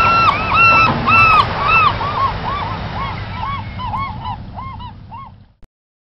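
A flock of geese honking, short calls overlapping a couple of times a second, fading away and cutting off shortly before the end.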